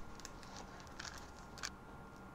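A few faint, short crisp sounds, the loudest about one and a half seconds in. They come from a kitchen knife cutting into a slab of frozen mango sorbet lying on wax paper.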